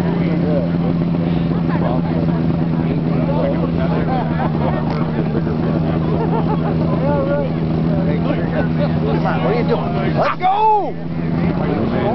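Snowmobile engine running at a steady throttle for about ten seconds, then briefly dropping and rising in pitch near the end. Voices underneath.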